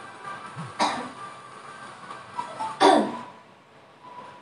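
Two short bursts from a person's voice, like a cough or a burst of laughter, about two seconds apart, the second louder and falling in pitch, over faint dance music.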